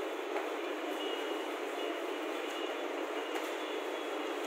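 Chalk scratching and tapping on a blackboard as a word is written, over steady background noise.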